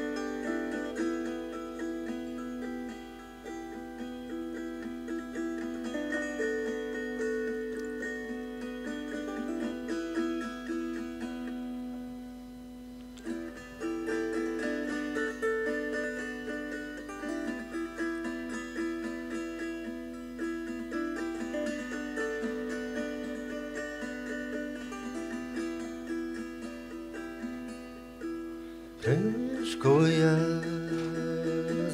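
Instrumental music: a plucked-string instrument playing a stepping melody in repeating phrases over a steady low drone, with a short lull around the middle and a loud rising glide near the end.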